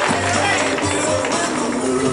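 Background music with repeated low bass notes.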